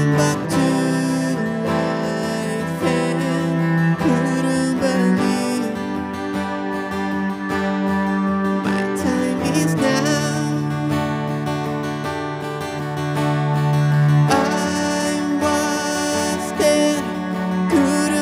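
Live acoustic song: two acoustic guitars strummed, a bowed low string instrument holding long low notes that change every couple of seconds, and a man singing.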